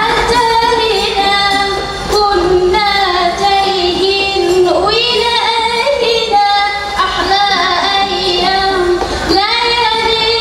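A woman singing an Arabic-language qasidah through a PA system, holding long notes with melismatic ornaments that waver in pitch.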